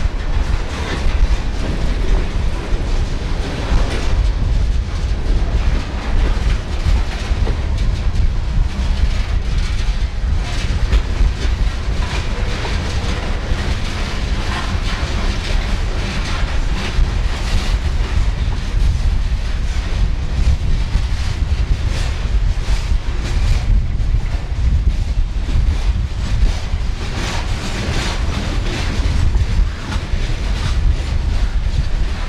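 Freight train's covered hopper cars rolling past, steel wheels clattering over the rails in a steady stream of clicks over a low rumble.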